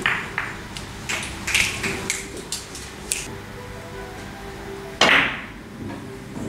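Ivory-like phenolic carom billiard balls clicking against one another and off the cushions: a quick run of sharp clicks over the first three seconds, then one louder sharp knock about five seconds in.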